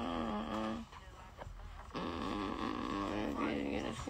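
A man humming a wordless melody into a studio microphone: a short hum at the start and a longer one from about two seconds in, working out a vocal flow.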